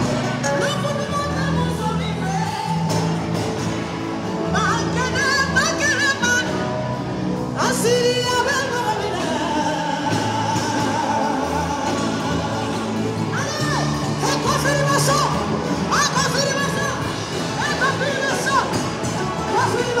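A woman singing into a microphone over amplified backing music, carried through a PA in a large hall. Her sung lines are long and bend in pitch over a steady accompaniment.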